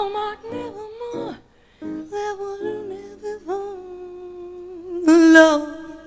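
A woman singing a slow jazz melody, scooping up into long held notes. Near the end she sings one louder note with strong vibrato.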